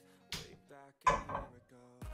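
Quiet background music, with a single sharp knock about a third of a second in as a square pan is set down on the metal grate of a gas cooker.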